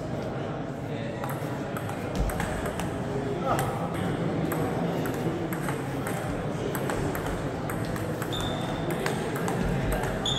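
Table tennis ball clicking off bats and table in a serve and rally, with more ball clicks and voices from other tables in a busy hall.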